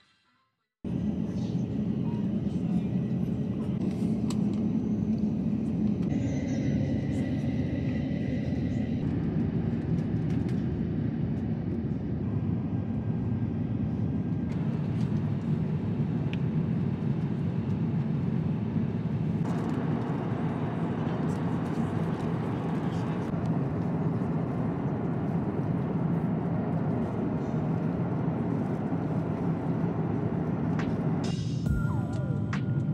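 Steady low drone of airliner cabin noise, engines and rushing air, starting about a second in and holding even throughout.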